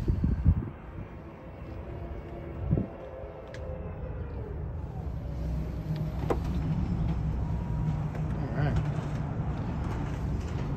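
Rear liftgate of a 2018 Toyota RAV4 SE closing. There is a thump about half a second in, then a motor whine that falls in pitch over a few seconds, with a second thump near three seconds in. A steady low rumble fills the rest.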